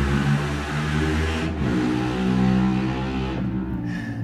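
Motorbike engine running, a steady drone of several tones that shifts in pitch about a second and a half in and fades near the end.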